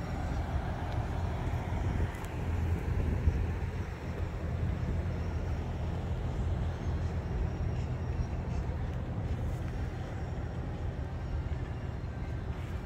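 Steady low rumble of outdoor background noise with a faint hum underneath, unchanging throughout.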